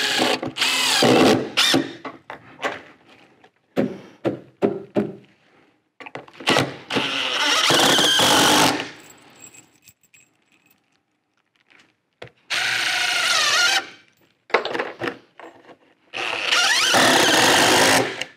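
Cordless drill driving screws into wooden framing in four bursts of a couple of seconds each, the motor pitch wavering as each screw goes in, with small clicks between the bursts.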